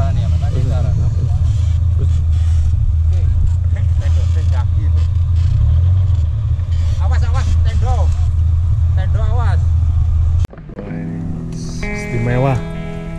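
A vehicle engine idling with a steady low rumble, with faint voices behind it. It cuts off suddenly about ten and a half seconds in, and guitar music starts.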